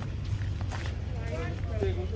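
Quiet talking: a voice comes in about halfway through over a steady low rumble.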